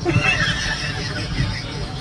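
A man laughing hard: a long burst of rapid, breathy laughter.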